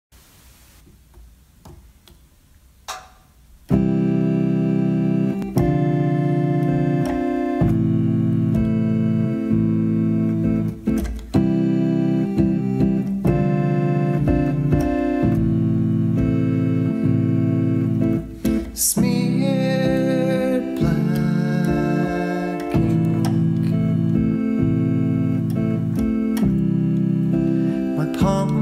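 Instrumental intro on an electric keyboard: sustained organ-like chords that change every second or two, coming in after a few seconds of quiet.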